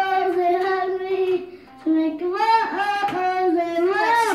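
A young girl singing, holding a long note, then pausing briefly about a second and a half in before singing on with more held, sliding notes.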